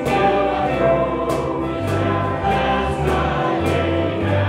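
A church worship team of mixed voices singing a gospel song together over band accompaniment, with a steady beat.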